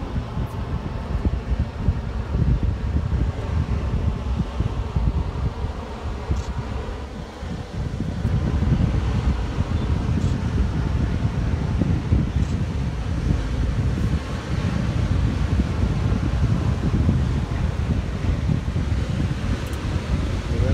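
Wind buffeting the microphone: a rough, fluttering low rumble that rises and falls, with a brief lull about seven seconds in and louder after that.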